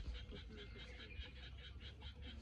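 A steady chorus of rapid, evenly pulsed animal calls, about six pulses a second, over a low rumble, with a short low thump at the very start.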